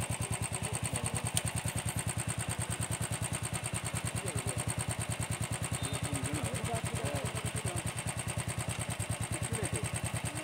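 An engine idling with a steady, even throb of about ten beats a second throughout.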